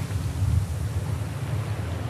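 Wind buffeting the microphone in a low, uneven rumble, with ocean surf breaking steadily behind it.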